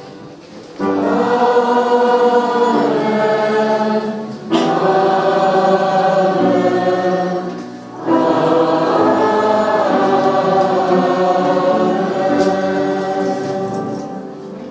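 Congregation singing a hymn together, in long sung phrases with brief breaks for breath about four and eight seconds in.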